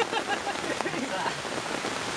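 Steady rain pattering on a tarp shelter, an even hiss with scattered drop ticks.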